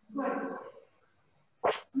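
A person's voice briefly, with no clear words, then a single short, sharp burst of noise about a second and a half in.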